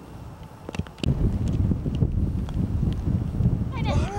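A single sharp click of a golf wedge striking the ball on a chip shot, under a second in, followed from about a second in by loud, gusting wind buffeting the microphone. Near the end, a short voice rises and falls in pitch.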